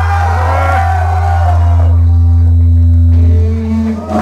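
Live rock band holding a final note: a loud, steady low bass drone with wavering higher tones above it, cutting off shortly before the end.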